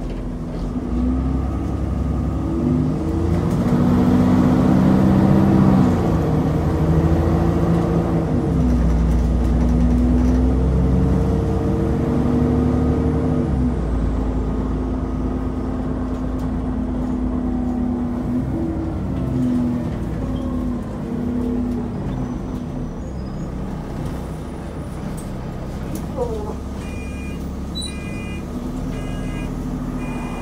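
Diesel engine of a London double-decker bus heard from the lower deck, pulling away and changing up through the gears, its note rising and dropping back several times, then running on more steadily as the bus slows. Near the end a high electronic beeping repeats as the bus comes to a stop.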